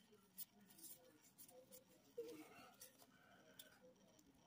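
Faint handling of a stack of cardstock trading cards, with a few soft scattered clicks and rustles as the cards are slid apart and flipped one by one over near silence.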